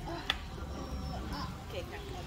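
Faint voices talking in the background, with a single sharp click about a third of a second in.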